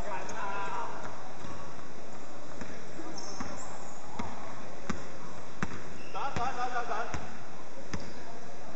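Basketball being dribbled on a hardwood court, each bounce a sharp slap, settling into a steady rhythm of about one bounce every 0.7 s in the second half.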